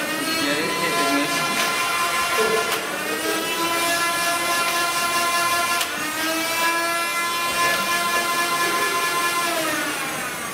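Small electric motors of an automated Nerf turret whining. The pitch climbs and then holds steady three times, at the start, about three seconds in and about six seconds in, and falls away near the end.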